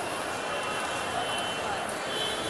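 Indistinct background chatter of people in a crowded hall over a steady wash of noise, with no single sound standing out.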